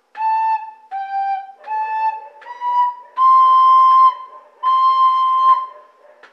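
Soprano recorder playing a simple phrase of six clean, separate notes: A, G, A and B, then two long held Cs.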